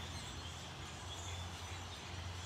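Faint, distant bird calls over a steady low hum.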